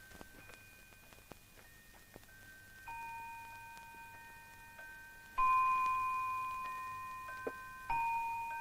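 Clock chimes: bell-like notes of several pitches struck one after another, each ringing on and slowly fading. They are faint at first, then louder from about three seconds in, with the loudest strike past the five-second mark.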